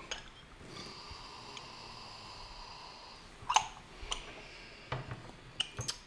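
A long, slow sniff at a porcelain gaiwan lid, taking in the aroma of the brewed tea. It is followed by a few small, sharp porcelain clicks, the first with a brief ring, as the lid and gaiwan are handled.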